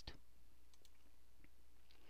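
A single computer mouse click right at the start, then faint room tone.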